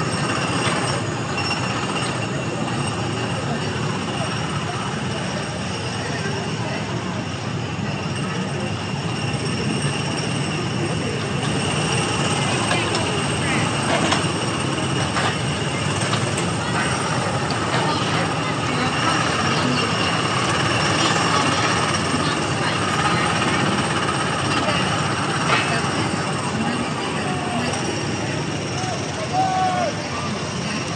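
Small gasoline engines of Tomorrowland Speedway ride cars running as they circle the track, a steady engine drone with people's voices mixed in.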